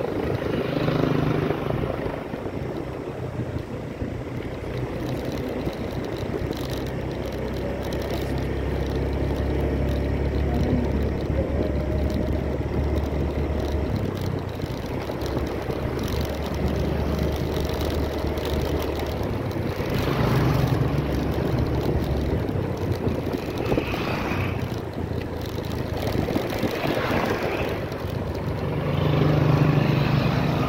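Steady engine drone and road noise from a moving vehicle, with wind on the microphone. It swells louder a few times in the second half.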